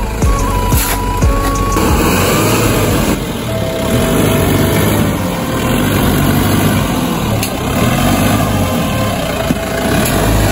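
Mahindra Bolero SUV's engine running steadily under load as the vehicle crawls through deep mud ruts.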